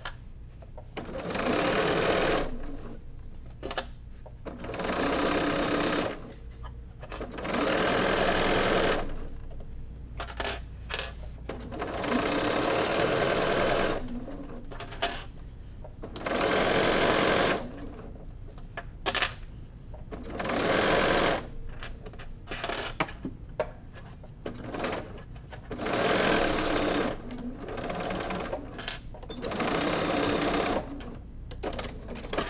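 A domestic sewing machine fitted with a walking foot stitches a binding strip through thick quilted layers. It runs in short bursts of one to two seconds, stopping and starting about seven times, with a few small handling clicks in the pauses.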